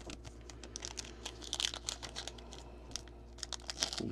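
Foil trading-card pack wrapper crinkling as hands work it and tear it open: a dense run of small sharp crackles, with a louder flurry about halfway through.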